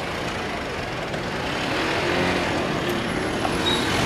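Road traffic on a busy city street: a steady wash of passing trucks, cars and motorbikes, swelling slightly toward the end.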